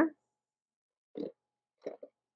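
Cherry tomatoes dropped into halved raw spaghetti squash: two short, soft plops, one about a second in and one near the end.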